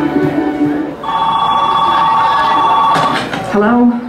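A telephone ringing in the performance's playback track: one steady, warbling two-tone ring lasting about two seconds, starting just after the music stops. A voice starts near the end.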